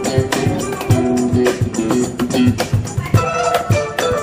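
Live instrumental ensemble: a guzheng (Chinese plucked zither) playing a plucked melody over a steady cajón beat, with an electric guitar accompanying.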